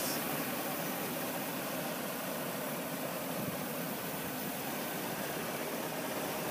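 2022 Chevrolet Silverado 2500HD's 6.6-litre V8 gas engine idling steadily, heard close up in the open engine bay.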